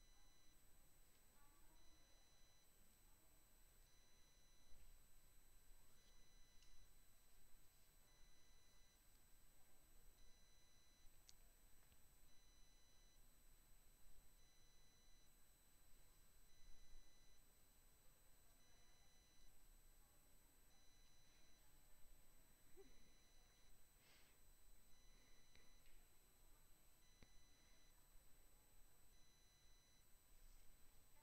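Near silence: faint room tone with a few faint, steady high electronic tones.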